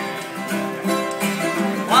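Acoustic guitar and mandolin playing a folk song's accompaniment in a short instrumental gap between sung lines, with light rhythmic clicks on the beat. A sung word comes in right at the end.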